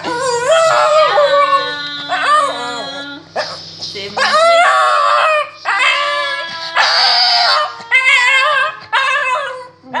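Shih tzu howling along to a person's singing: several long wavering howls in a row, each broken off by a short gap.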